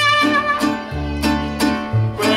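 Live mariachi band playing: strummed vihuela and guitars keep a steady rhythm under bowed violin, with a low bass line and a trumpet in the ensemble.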